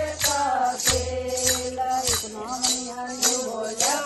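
A group of women singing a devotional bhajan together, with plastic hand rattles shaken on a steady beat of about three strokes a second.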